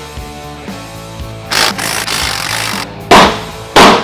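A cordless impact driver hammering for about a second, then two loud blows of a mallet on the cast-aluminium supercharger housing, struck to loosen it for teardown.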